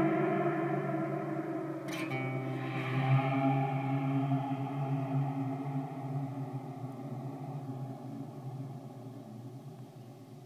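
Electric guitar through an Eventide SPACE pedal's Blackhole reverb at full gravity: a long, unstable-sounding wash of reverb tail that fades slowly away. A sharp click about two seconds in, and a small swell about a second later.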